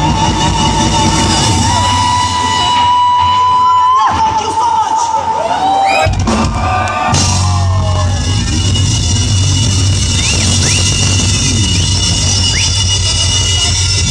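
Live rock band on stage: a long held high note that breaks off about four seconds in, then a steady low drone, with the crowd shouting and cheering over it.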